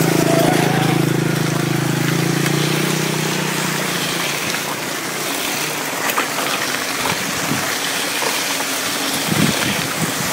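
A small motorcycle's engine passing close by, its steady hum fading away over the first four seconds. After that a steady rushing noise of wind on the microphone and the bicycle rolling over the dirt track, with a few knocks near the end.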